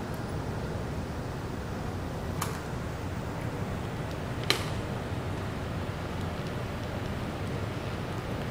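Steady room noise with two light clicks, about two and a half and four and a half seconds in, as wire leads are handled while hooking up a backup alarm. The alarm itself is not sounding yet.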